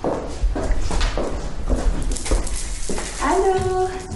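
Footsteps on a hard tiled floor, about three a second. Near the end a drawn-out whining tone comes in.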